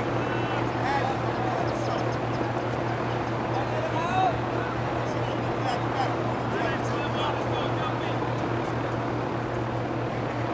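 Distant, indistinct voices of players and spectators calling out during a soccer game, over a steady low hum that runs throughout.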